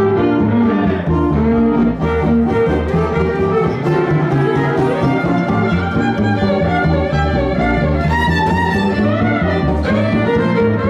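Western swing band playing an instrumental break: fiddles lead over upright bass and guitar, with sliding fiddle notes near the end.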